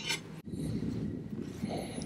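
Soft rubbing and scraping handling noise from moving the glass 3D-printer build plate, broken by a short gap about half a second in.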